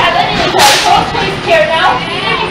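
A short, loud hiss about half a second in, over the chatter of people's voices.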